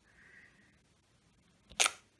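A single short, sharp click near the end as a clear acrylic stamping block with a photopolymer stamp is lifted off the card after stamping.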